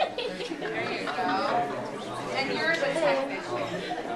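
Chatter: several audience members talking at once, their voices overlapping.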